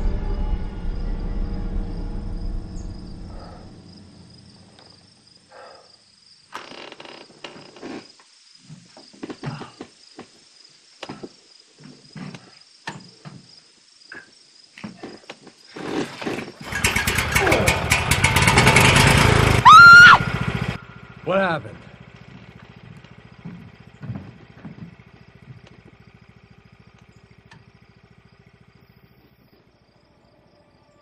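Film score fading out, then scattered metallic clicks and knocks as a small gasoline engine is worked on by hand, under a faint steady high tone. About seventeen seconds in, the engine catches and runs loudly for about four seconds, then cuts off suddenly.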